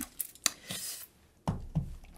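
Several sharp clicks and knocks of small objects being handled on a tabletop, with a brief rustle between them.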